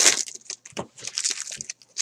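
Plastic wrappers of 2018 Bowman Hobby baseball card packs crinkling and crackling as they are torn open and handled, in quick irregular bursts that are loudest right at the start.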